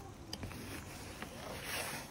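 Faint, steady background noise, a low hiss, with a couple of faint clicks.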